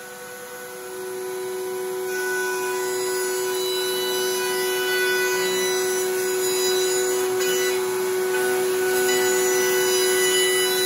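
Table-mounted router running at a steady high whine while a wooden drum shell is turned around over its bit, recutting the shell's bearing edge. The noise of the wood being cut builds over the first two seconds or so and then holds steady and loud.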